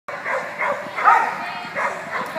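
Dog barking, about four short barks, the loudest about a second in.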